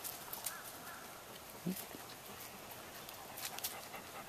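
Faint crackling footsteps on dry leaves and dirt as dogs walk about the yard, with a cluster of sharper crunches near the end and a brief low sound near the middle.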